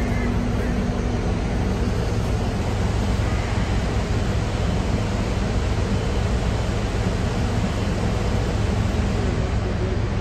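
Steady rushing outdoor noise with a deep low rumble, even throughout, with no distinct events.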